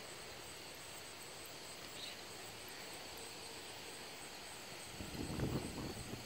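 Faint outdoor ambience with a steady high-pitched insect chorus, typical of crickets. A brief low rustling noise comes near the end.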